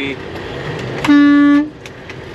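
A truck horn sounds once about a second in: a single steady, pitched blast a little over half a second long, over a steady low road hum.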